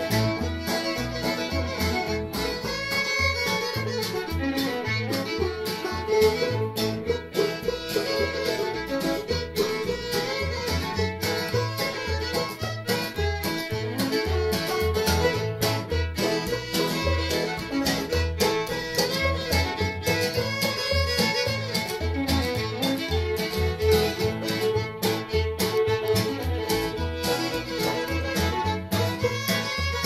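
A small string band playing a tune: a fiddle carries the bowed melody over an acoustic guitar and a plucked upright bass sounding note after note underneath.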